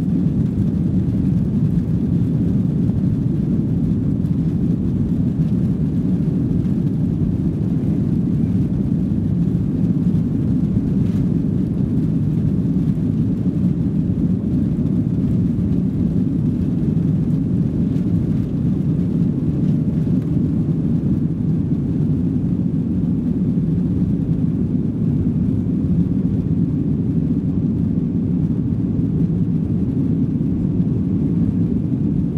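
Cabin noise of a Boeing 737-800 taking off, heard from a rear seat: its CFM56-7B turbofans at takeoff thrust make a loud, steady low rumble through the takeoff roll and into the climb.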